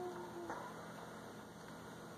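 A person's faint hummed "mmm", held on one slowly falling note, ending about half a second in; after that only quiet room tone, with a small click as it ends.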